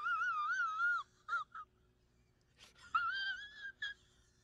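A man crying in a high, wavering falsetto wail, then two short sobs and a pause, then a second wail that rises and holds near the end.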